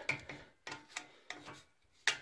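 Threaded knob handle being screwed by hand into the steel frame of a barbell support: quiet rubbing and scraping of the threads, with a few short clicks.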